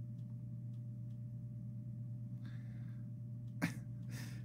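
Steady low electrical hum with a few faint clicks, then a short, sharp breath near the end.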